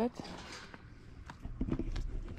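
Scattered footsteps and knocks as a hiker pushes through a rusted wire-mesh gate on a stony path. There is a short bit of her voice near the end.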